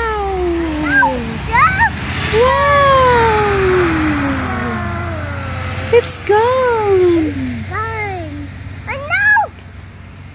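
A young child's voice wailing in imitation of a fire-engine siren: drawn-out 'woooo' cries that rise briefly and then slide down in pitch, three long ones and several shorter ones.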